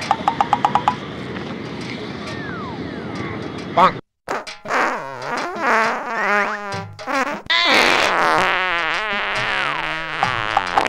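Prank fart sound effects played from a mobile phone: long, wobbling fart noises that start about four and a half seconds in and grow louder near the end. A short run of rapid ticks comes at the very start.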